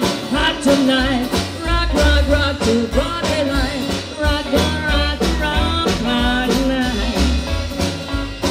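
A live band with a singer, plucked upright bass and drums playing a rock-and-roll or blues number. Deep bass notes change about twice a second under the voice.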